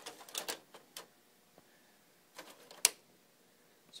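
Light plastic clicks from the front panel of an Acer Aspire easyStore home server being handled and opened: a few quick clicks in the first second, then one sharp click about three seconds in.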